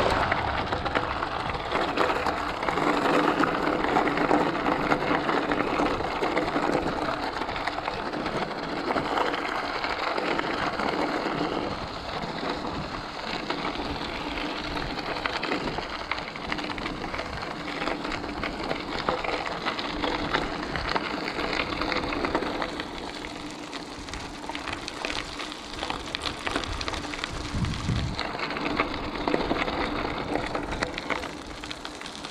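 Mountain bike tyres rolling over loose gravel: a continuous crackling crunch that eases somewhat in the last third.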